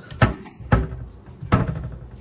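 Three sharp knocks, the first two about half a second apart and the third nearly a second later.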